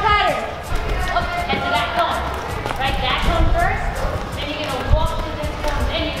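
Indistinct voices in a large indoor hall, no clear words, over background music, with scattered sharp knocks.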